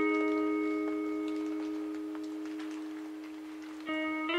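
A guitar note ringing out and slowly fading, with a new note struck just before the end.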